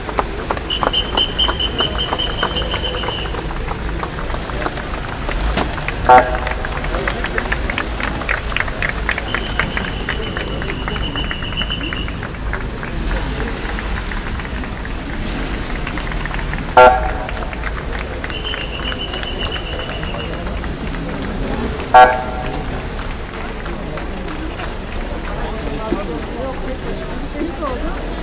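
Three short, loud car horn toots several seconds apart, with long steady blasts of a high whistle in between, over the chatter of a large crowd.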